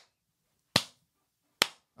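A person clapping her hands slowly: two sharp single claps a little under a second apart, each fading quickly.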